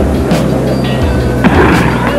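Background music with a steady bass line, and a single sharp crack about one and a half seconds in: the starter's pistol firing to start a mile race.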